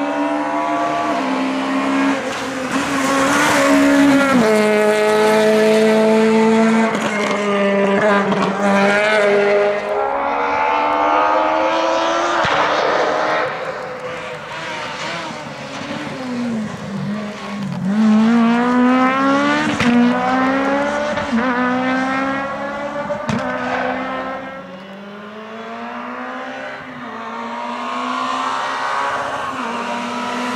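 Rally cars driven flat out on a stage, one after another. Their engines rev up hard and drop sharply in pitch as they lift off or change gear, then climb again on the throttle.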